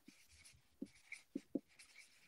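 Faint room tone broken by about four soft, short taps a few tenths of a second apart, starting almost a second in.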